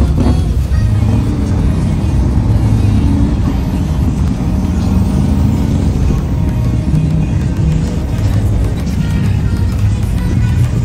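Street traffic, including a line of classic lowrider cars, running steadily through an intersection with a deep engine rumble, and music playing throughout.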